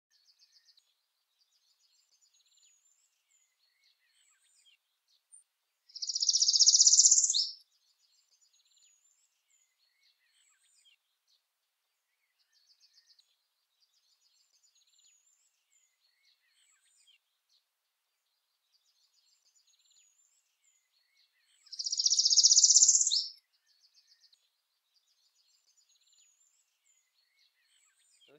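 Northern parula singing twice: each song is a loud, buzzy trill about a second and a half long, ending in a sharp upswept note. Faint high chirps of birds fill the gaps between the songs.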